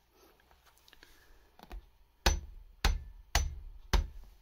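A hammer striking the metal damper rod assembly of a bicycle suspension fork: a soft knock, then four sharp taps about half a second apart in the second half.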